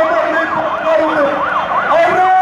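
A yelp-type siren sweeping rapidly up and down, about four cycles a second, with other held tones and voices beneath it.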